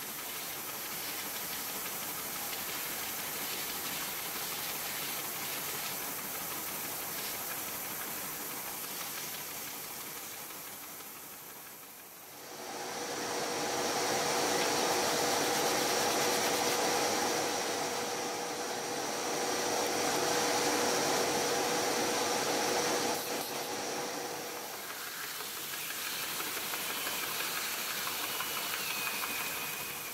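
Bench belt sander running, with small wooden pieces held against the abrasive belt. About twelve seconds in it gets louder and takes on a steady hum, easing off again later on.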